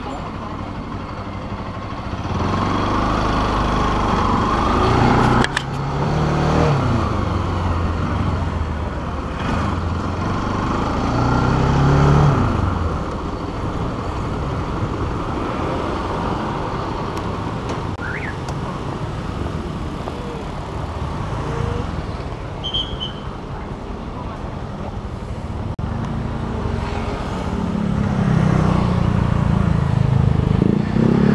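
Motorcycle engine running while the bike is ridden at low speed, its pitch rising and falling with throttle a few times, under steady road noise.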